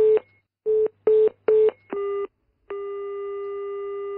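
Telephone line tone after the call is hung up: short beeps at one pitch, about two a second, then a brief steady tone and, from about two and a half seconds in, a longer steady tone.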